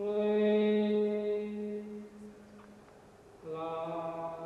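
A voice chanting long held notes: one steady note for about two and a half seconds, then a second, slightly lower note beginning near the end.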